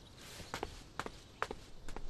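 Footsteps: four light, evenly spaced steps about half a second apart.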